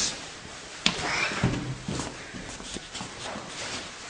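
Scuffing and a few knocks from someone squeezing and climbing through a narrow gap, with the handheld camera bumping about; the sharpest knocks come about a second and a second and a half in.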